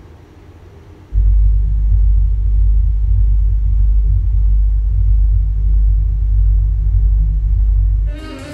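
Deep, loud rumbling drone from a film soundtrack that comes in suddenly about a second in and then holds steady, all bass with almost nothing higher.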